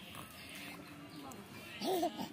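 A baby's faint vocalizing: a soft low hum, then a short, louder voice sound near the end whose pitch rises and falls.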